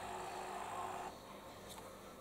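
Faint handling of a handheld DYMO LabelPoint label maker over low room tone, with a couple of faint clicks near the end; a faint hum stops about a second in.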